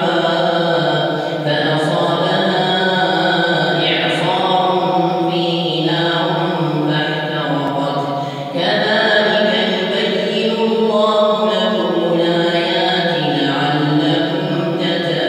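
An imam reciting the Quran in a melodic chant while leading the night prayer: long, drawn-out phrases with short pauses for breath between them.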